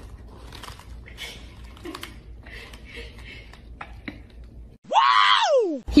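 A cat crunching dry kibble from a bowl, soft scattered crunches. Near the end a louder pitched sound of about a second rises briefly and then slides steeply down in pitch.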